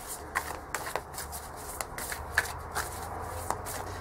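A tarot deck being shuffled by hand: a run of soft, irregular card clicks and rustles.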